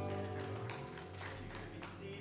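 A church worship band's closing chord ringing out and slowly fading, with a few light taps in the second half.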